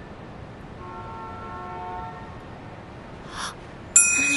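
A car horn sounding once for about a second, a steady two-note chord, over a low street background. A brief soft rustle comes near the end.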